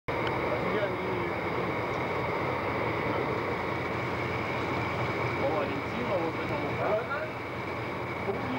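Faint, indistinct voices over a steady rushing background noise, on a worn analog video soundtrack that has been copied several times.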